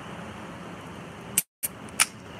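Steady street background noise, then near the end a few sharp clicks as the pull tab of a can of coffee is snapped open.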